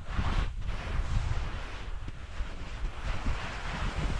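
Rushing, gusty noise of sliding fast down a steep snowfield: snow hissing under the slider, with wind buffeting the microphone as a low rumble.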